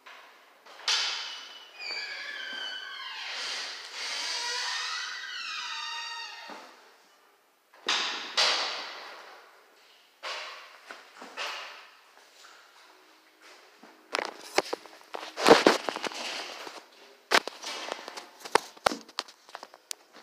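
A man's breathy, wordless vocal sounds sliding down in pitch after a dumbbell set. Later comes a run of sharp clicks and knocks as the phone recording is handled and picked up.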